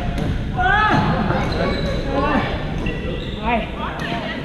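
Echoing din of a busy badminton hall: players' voices mixed with short squeaks and thuds of play on the courts.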